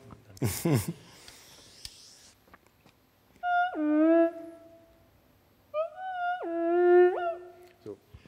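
Theremin played twice: each time a note starts high and slides smoothly down about an octave to a held lower note. The second ends with a quick slide back up before cutting off.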